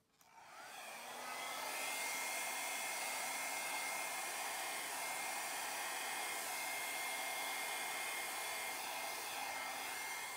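Hair dryer switched on, its motor whine rising as it spins up over the first second or so, then running steadily with a rush of air, blowing thinned acrylic pour paint across a wood panel.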